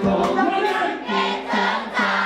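Live amplified vocal performance: a singer on a handheld microphone sings over loud music, with several voices together as in a choir or a crowd singing along.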